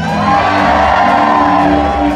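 Live band music on stage, with a long held note that swells at the start and is sustained throughout.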